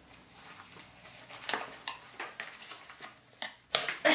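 Fabric drawstring bag rustling as a small plush toy is pushed into it, with scattered light scratching and handling noises and one sharp click or knock near the end.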